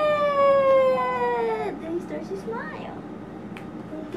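A long, high-pitched "woooo" call from a single voice, held and slowly falling in pitch, cut off about one and a half seconds in. Only faint, brief sounds follow.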